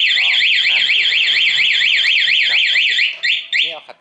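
Aftermarket motorcycle anti-theft alarm siren wailing loudly in fast up-and-down sweeps, about four a second. It is set off by a fake key pushed into the ignition and turned while the alarm is armed. Near the end it breaks into a few short chirps and cuts off.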